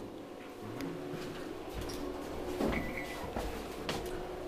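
Schindler traction elevator: a steady hum with a few soft knocks, and a short high beep about three seconds in as a button on the car's panel is pressed.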